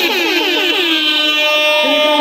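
A man's voice through the PA system holding one long sung note: it slides down in pitch at first, then holds steady.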